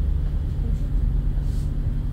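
Low, steady rumble of a double-decker bus's engine and body, heard from inside on the upper deck.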